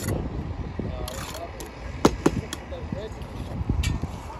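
Steel trowel scraping and spreading a mortar bed along the top of a concrete-block wall, with a few sharp clinks about halfway through and again near the end.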